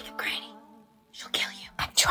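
A woman's hushed, whispering voice, with a held pitched sound. Near the end a louder, sudden sound begins.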